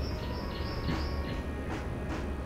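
Birds chirping: a string of short, high chirps over a steady low rumble.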